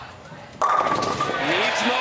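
Bowling ball rolling down the lane, then striking the full rack of pins about half a second in with a sudden loud crash for a strike. Crowd cheering and shouting follows.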